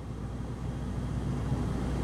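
Interior noise of a 2009 Smart Fortwo Passion coupe cruising at about 55 mph: its 70-horsepower three-cylinder engine runs with a steady low hum under road and tyre noise, smooth and getting slightly louder.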